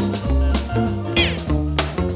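1950s doo-wop record playing, with a bass line and drum hits about twice a second. A short high falling glide comes a little past one second in.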